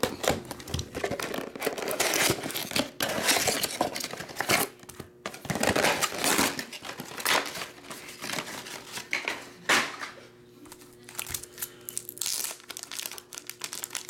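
Plastic wrapping crinkling and tearing as a trading card box is cut open with a utility knife and unpacked. The crackling is dense for the first ten seconds or so, then turns sparser and quieter as the cards are handled.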